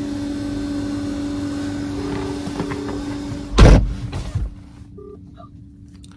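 Phone-call ringback tone from a mobile phone's speaker, a double ring of two short tones in quick succession, over a steady hum. A loud thump comes about three and a half seconds in, after which the background noise drops away.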